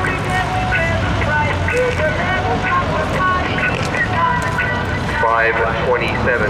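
Engines of a grid of race cars idling and revving together, with a rev that rises about five seconds in. A public-address announcer's voice carries over them.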